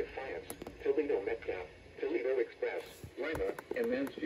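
NOAA weather radio receiver playing the live weather broadcast through its small speaker: a voice reading out the regional weather report, with temperatures and sky conditions for nearby stations.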